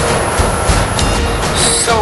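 Steady loud rushing noise with a faint hum, and a brief sharper hiss near the end.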